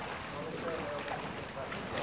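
Pool water splashing and churning from a swimmer's front-crawl strokes, a steady rushing noise.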